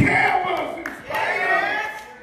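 Preacher's voice shouting in long, pitched, chant-like phrases, with crowd voices calling out.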